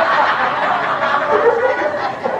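An audience laughing together, many voices at once, in reaction to a joke.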